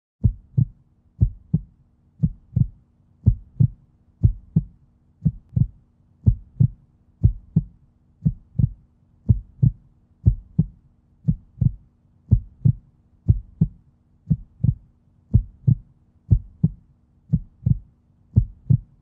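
Heartbeat sound: pairs of deep thumps, lub-dub, about one pair a second, over a faint steady drone.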